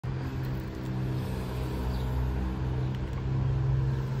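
A car engine idling steadily, a low even hum that swells slightly near the end.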